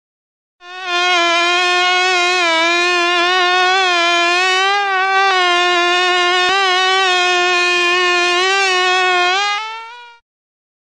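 A fly buzzing in flight: one long, loud drone that wavers slightly in pitch. It starts just under a second in, and near the end its pitch rises a little as it fades out.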